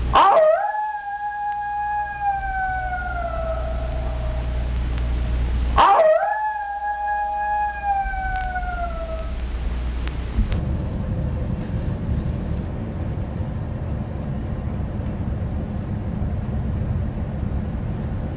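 A dog howling twice, each long call rising quickly and then falling slowly in pitch. From about ten seconds in, a steady low rumble, as of a bus interior, takes over.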